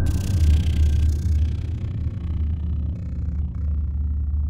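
Logo sound sting: a deep, sustained low rumble, with a bright hissing shimmer at the start that dies away over about a second and a half while the low drone carries on.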